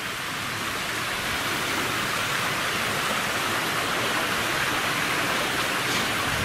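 Steady rush of running water, growing a little louder in the first second and then holding even.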